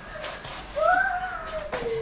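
One long, high-pitched drawn-out vocal call that starts about a second in, rises slightly and then slides slowly down in pitch.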